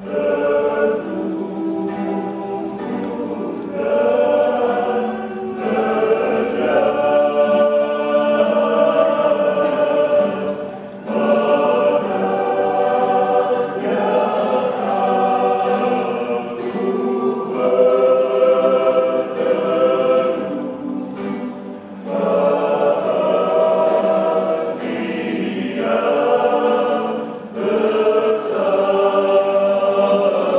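Men's vocal group singing a worship song in harmony, accompanied by a small acoustic guitar. The phrases break briefly about 11, 22 and 27 seconds in.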